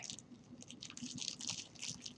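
Faint crinkling of a plastic zipper bag and soft squishing as hands knead wet Egyptian paste clay inside it, working the dry powder into the water.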